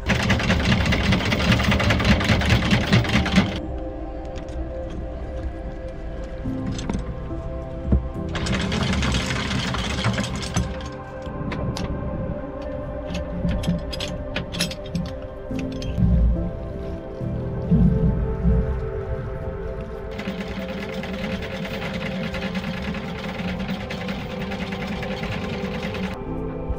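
Background music runs throughout over an electric anchor windlass hauling in chain. The windlass runs in three stretches: the first few seconds, again around a third of the way in, and through the last several seconds.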